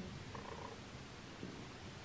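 Faint room tone with a low, steady rumble; nothing distinct stands out.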